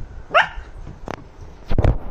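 German Shepherd puppy barking to wake its owners: a short rising yelp about a third of a second in, then a loud single bark near the end.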